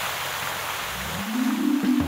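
A steady hiss of spraying water mist. About a second in, a low droning tone swells in and holds.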